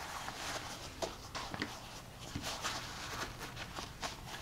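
A roll-up chessboard being rolled up by hand on a tabletop: soft, faint rustling and scuffing with a few light taps.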